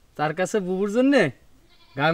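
A person's voice speaking one short phrase of dialogue, about a second long, falling in pitch at the end.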